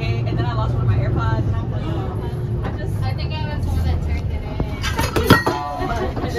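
Bus engine running with a steady low rumble inside the passenger cabin, under passengers' chatter, with a sharp knock about five seconds in.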